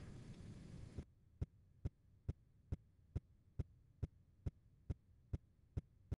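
Faint hiss, then from about a second in a steady series of short, sharp clicks, a little over two a second, about a dozen in all, with dead silence between them.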